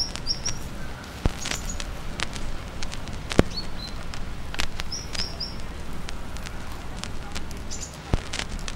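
Small birds chirping, a few short runs of two or three quick high notes, over a steady low background noise. Scattered sharp clicks and pops throughout, two of them louder than the rest.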